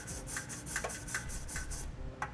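Small wire brush scrubbing in and out of a weld nut in a steel frame rail, a dry scratchy rasp in repeated short strokes, cleaning loose dirt and debris out of the threads.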